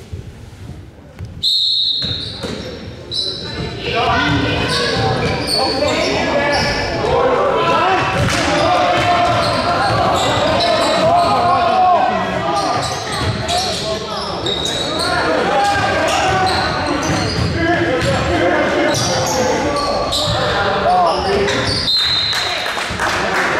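Basketball game in a reverberant gym: a brief high squeak about 1.5 s in, then from about 4 s many voices of spectators and players shouting and talking, over ball bounces on the hardwood and short sneaker squeaks.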